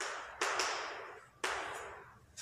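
Chalk writing on a blackboard: four short strokes, each starting sharply and trailing off. The first three are the loudest.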